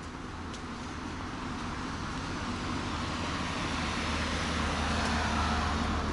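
A road vehicle approaching, its engine and tyre noise growing steadily louder.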